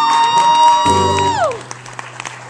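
End of a live acoustic guitar song: a final strummed chord rings under a high held note that drops away about a second and a half in. Audience applause and cheering then begin.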